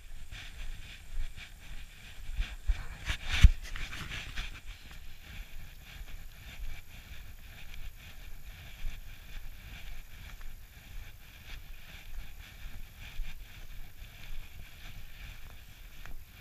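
Uneven crunching over packed snow as the camera-bearer moves along a snowy trail, with a low rumble of wind on the microphone. A sharp knock, the loudest sound, comes about three and a half seconds in.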